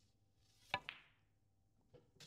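Snooker shot played with top spin at medium pace: a sharp click of the cue tip on the cue ball, followed a moment later by the click of the cue ball striking the black, about three quarters of a second in.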